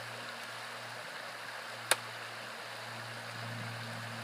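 Shallow river riffle running steadily over stones, with one sharp click about two seconds in.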